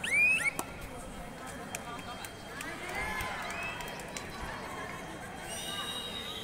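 Voices shouting across a kabaddi court: a loud rising shout right at the start, more calls in the middle, and a held call near the end.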